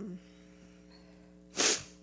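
A woman's short, sharp intake of breath or sniff into a headset microphone, about a second and a half in, over a steady electrical hum.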